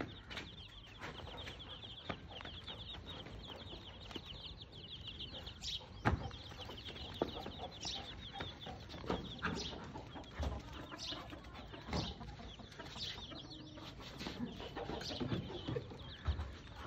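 Farmyard ambience: chickens clucking, with rapid high chirping in the first few seconds and scattered sharp knocks, the loudest about 6 and 12 seconds in.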